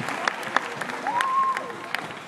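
Audience applause: scattered hand claps from a crowd, with one voice calling out briefly a little past the middle.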